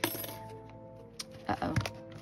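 A small metal applique comes loose from a handmade journal and drops onto a wooden desk with a light metallic clink, a little over a second in.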